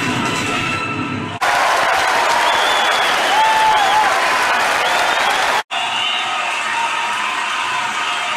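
Music ends abruptly about a second and a half in, cut to a large theatre audience applauding and cheering, with a few whistles. The applause breaks off for an instant about five and a half seconds in, then carries on.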